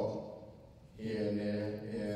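A man's voice amplified through a handheld microphone, drawn out and level in pitch, with a short pause in the first second before he goes on.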